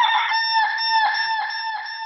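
Rooster crowing sound effect in a break in the dance music: one long, steady-pitched call with a slight wavering.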